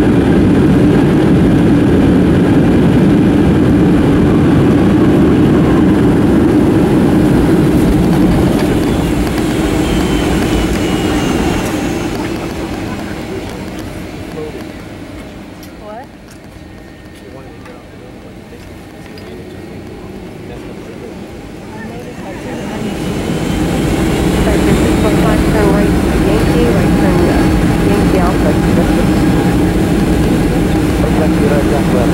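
Cabin noise of a Boeing 757-300 taxiing, heard from a seat beside the wing: steady jet engine and rolling noise that dies down about halfway through and builds again near the end with a rising engine whine.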